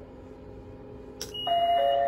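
JR West Techsia SG70 simple IC-card ticket gate giving its error alert after a card with zero balance is touched: insufficient balance. A click, then a high steady beep, then a two-note chime whose second, lower note joins the first, both held steady.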